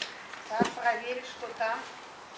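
A person's short voiced exclamations, several in a row, with a single sharp knock just after half a second in.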